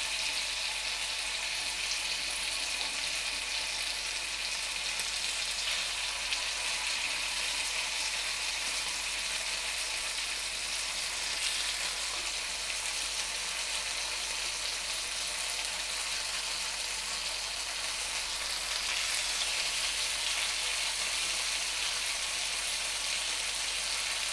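Masala-marinated chicken pieces frying in hot oil on a pan, a steady sizzle throughout.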